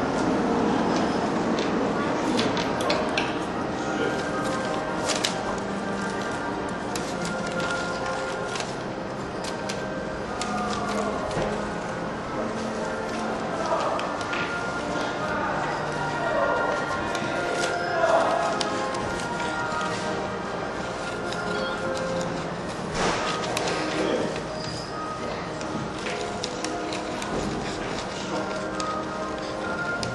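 Music playing with voices in it, over many short, sharp snips of small scissors cutting through folded paper.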